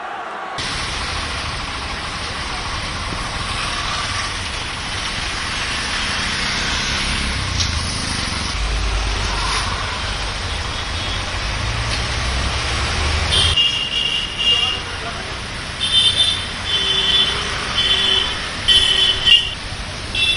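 Busy street noise of traffic and an indistinct crowd of voices, with a heavy low rumble. In the last third the rumble drops and a string of short horn honks sounds, several under a second each.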